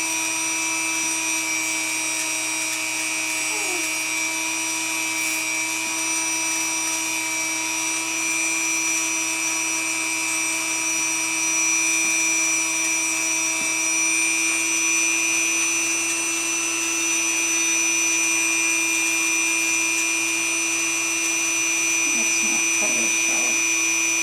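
Dremel rotary tool running with a steady high-pitched whine as its grinding bit shortens and blunts a great horned owl's talons, a little louder from about halfway.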